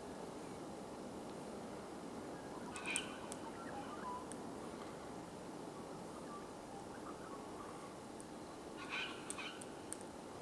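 Birds giving short high calls twice, about three seconds in and again near the end, with a few sharp clicks, over a steady outdoor background hiss.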